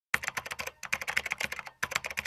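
Typing sound effect: rapid computer-keyboard keystrokes, about eight a second, in runs broken by two short pauses.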